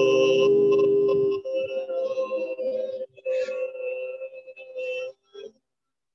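A woman's voice chanting Om in one long held note. It is loud for the first second and a half, then carries on quieter and wavering, and ends about five and a half seconds in.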